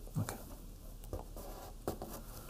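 Hand pressing and smoothing a paper sticky label onto a flip chart sheet, a soft rubbing of paper on paper, with one sharp tap against the board near the end.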